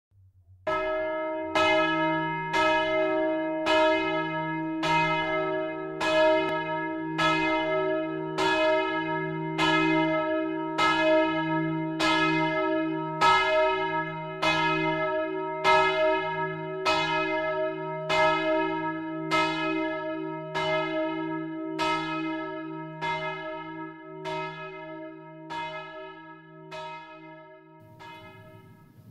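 A church bell tolling steadily, about one stroke a second over a lingering hum, growing fainter over the last several seconds: the bell rung to call to evening prayer.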